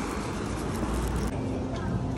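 Street traffic noise: a steady low rumble and hiss of road vehicles.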